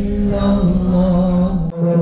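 Quran recitation in a melodic, chanted style: one long held note that shifts slightly in pitch, with a sharp click near the end.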